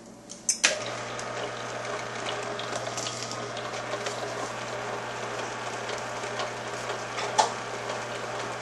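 Green Star twin-gear juicer starting with a click under a second in, then its motor humming steadily while the twin gears crush a hot pepper, with a continuous crackling grind. A sharp knock about seven seconds in.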